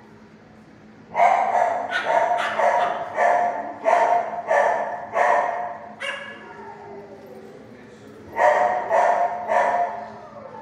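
Dog barking in a shelter kennel: a run of about ten barks at roughly two a second, starting about a second in, a pause, then three more barks near the end, over a steady low hum.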